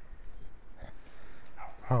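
A goldendoodle puppy bounding through deep, loose snow: faint, uneven crunches of her paws in the snow.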